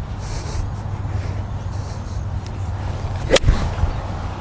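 A golf club striking a ball in a full swing: one sharp crack about three seconds in, over a steady low hum. It is a pure strike, in the golfer's own judgment.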